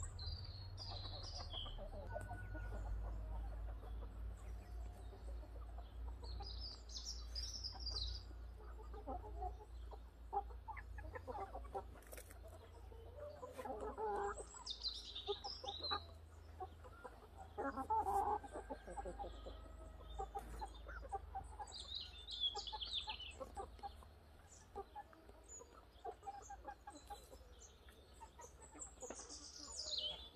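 Soft clucking calls of fowl come on and off, thickest through the middle, with short high chirps of small birds every several seconds. A low rumble underlies the first part and eases off near the end.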